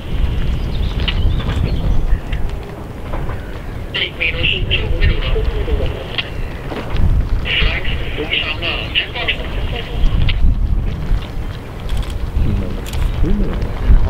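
Wind buffeting the microphone, a loud, uneven low rumble, with short high-pitched chirps coming and going.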